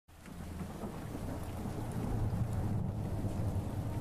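Steady rain with a low rumble of thunder that swells about two seconds in; the sound fades in at the very start.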